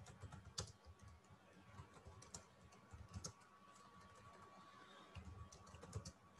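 Computer keyboard typing: faint, irregular keystrokes as a sentence is typed, with a faint steady tone underneath.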